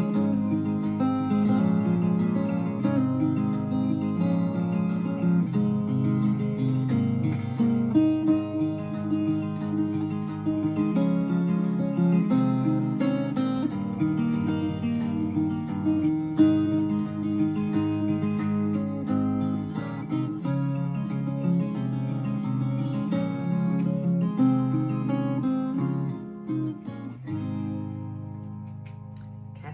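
Solo acoustic guitar playing the closing instrumental passage of the song, without voice. The notes fade near the end as the final chord rings out.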